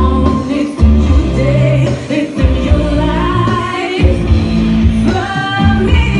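Live amplified pop music: a woman sings into a microphone over a loud dance track with a heavy bass beat.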